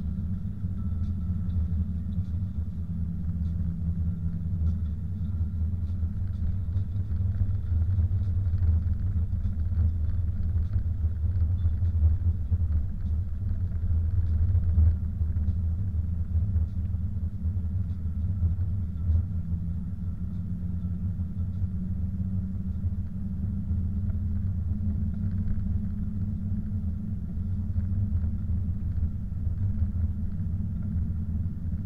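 Car driving on a snow-covered road, heard from inside the cabin: a steady low rumble of engine and tyre noise.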